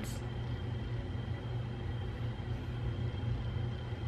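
Steady low hum with a couple of faint, thin high tones above it: the background noise of a small room.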